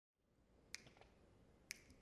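Two faint finger snaps about a second apart, counting off the tempo of a jazz tune, over near silence.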